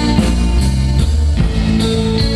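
Live rock band playing an instrumental passage on electric guitar, electric bass and drum kit, with held low bass notes, sustained guitar chords and steady cymbal and drum hits, and no vocals.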